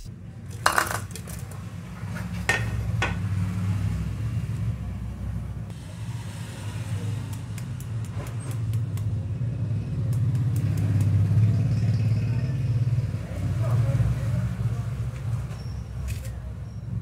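Crisp deep-fried poha pakoras crackling and crunching as fingers squeeze and break them open, heard as scattered sharp clicks and crackles. A steady low rumble runs underneath throughout and is the loudest sound.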